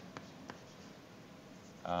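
Chalk writing on a blackboard: faint scratching, with a couple of short taps in the first half second.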